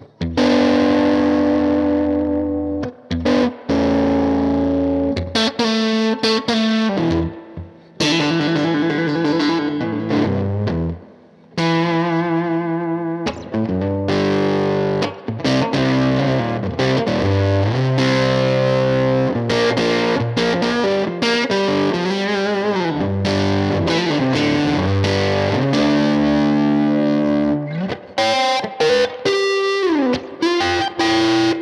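Electric guitar with an Analog Man fuzz pedal, played through a Universal Audio OX amp top box on its four-by-ten speaker cabinet setting. It plays fuzzy, a little sizzly chords and bluesy single-note lines with vibrato, broken by a few brief pauses.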